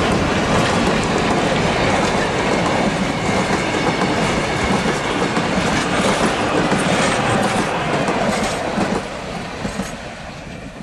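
Heritage excursion train rolling past, its carriage wheels running loudly over the rails. The sound falls away sharply about nine seconds in as the train moves off.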